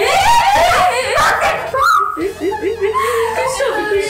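Several teenage girls squealing and shrieking at once in surprise and delight, high wavering voices overlapping.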